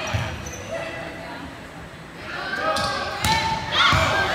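Volleyball being played in a gym: the ball is struck with a dull thud just after the start, then twice more near the end, in a rally. Players' voices and calls come between the hits, with the echo of a large hall.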